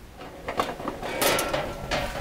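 Sheet-metal cover of a breaker panel being worked loose and lifted off: a string of clanks and knocks with metal scraping, loudest about a second in.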